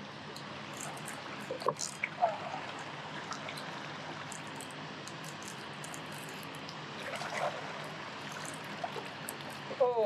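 Steady rush of flowing river water, with a few brief clicks and knocks about two seconds in.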